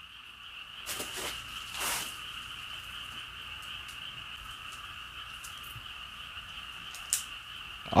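A steady nighttime chorus of frogs calling without a break, with two brief rustles about a second and two seconds in and a short click near the end.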